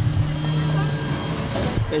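City street traffic: a steady low engine hum over general street noise.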